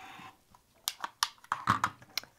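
A rotary cutter's blade rolls briefly through two layers of cotton fabric along an acrylic ruler, trimming off a corner, followed by a few sharp clicks and taps as the cutter is set down on the cutting mat and the fabric is handled.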